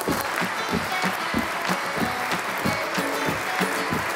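A church congregation applauding, with background music with a steady plucked rhythm playing over it.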